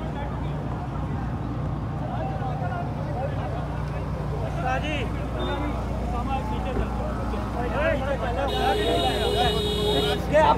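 Truck engine running with a steady low rumble under scattered voices of a crowd. A steady tone sounds over the last second and a half.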